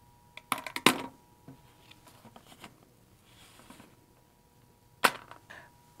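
Plastic syringe dropped from tongs into an empty plastic bleach jug: a quick clatter of several sharp clicks about half a second to a second in. Then light handling noises and one more sharp click near the end.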